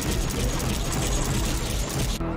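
Sci-fi space-battle sound effects from a TV episode's soundtrack: a loud, dense, rapid rattling clatter of fighter weapons fire around a space station.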